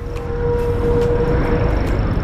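Rusi RFI 175 automatic scooter under way at cruising speed: wind and road rumble over the running engine, with a steady whine that fades out near the end.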